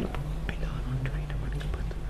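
Quiet, murmured speech close to a microphone: one man whispering to another.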